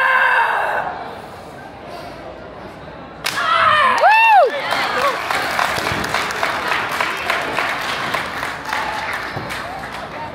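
A sharp shout at the start, then wooden breaking boards cracking suddenly about three seconds in, followed by a voice whose pitch rises and falls. Then a spell of clapping.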